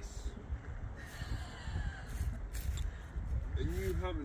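Wind buffeting the microphone as a steady low rumble, with faint voices, one clearer shortly before the end.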